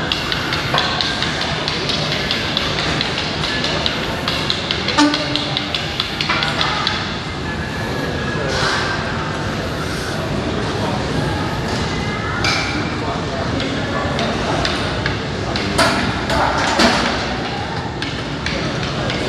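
Busy gym ambience of background music and voices, with several sharp clanks of weight plates, some from the plate-loaded T-bar row machine as its loaded lever swings through the reps.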